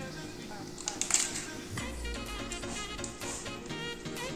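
Upbeat jazz background music with a horn melody, coming in about two seconds in after a quieter stretch with a few faint clicks.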